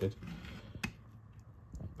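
Hand deburring tool's swivel blade scraping around the edge of a drilled hole in a metal amplifier chassis: quiet metal scraping with one sharp click a little under a second in and a few small ticks near the end.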